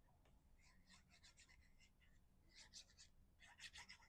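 Faint scratching and light ticking of a fine metal-tipped glue bottle's nozzle drawn across cardstock while liquid glue is squeezed out, growing busier near the end.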